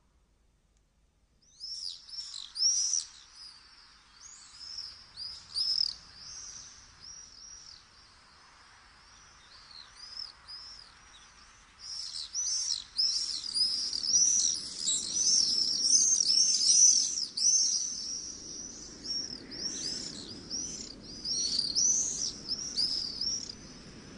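A flock of small birds calling with many short, high chirps, scattered at first and thickening into a busy chorus about halfway, over a faint low background noise.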